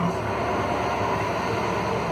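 A steady hiss of background noise, even throughout with no distinct tones or knocks.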